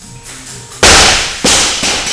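A heavily loaded barbell with bumper plates is dropped from the shoulders onto a wooden lifting platform after a front squat. It lands with a loud crash about a second in and bounces, giving two more, weaker crashes.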